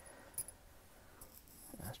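Small handling sounds of a little screwdriver and tiny screws on a towel: a short, light click about half a second in, with a fainter one just after, against a quiet room background.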